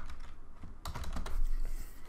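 Typing on a computer keyboard: a short pause, then a quick run of keystrokes about a second in.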